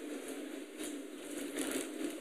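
A pause in speech: quiet hall room tone with a steady low hum, and a couple of faint brief rustles near the middle and later on.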